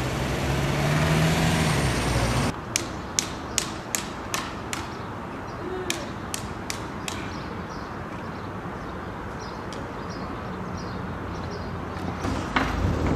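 A small car drives past close by, its engine hum rising and falling with tyre noise over the first two seconds or so. Then steady street noise with a run of sharp knocks, about three a second with a short gap, for several seconds.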